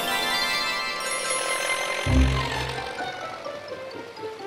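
Cartoon music with a shimmering magical transformation sound effect: many bright ringing tones that fade out over about three seconds, with a low thump about two seconds in.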